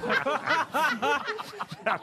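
Studio panel of several people laughing and chuckling, short repeated laughs overlapping.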